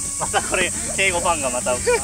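People's voices, animated and fast-changing in pitch, over a steady high-pitched hiss.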